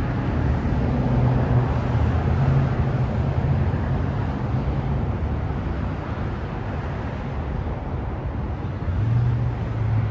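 Road traffic noise: a steady rumble of vehicles with a low engine hum that swells about a second in and again near the end.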